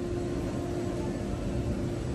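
Steady indoor room noise: an even hiss with one low, steady hum tone running through it.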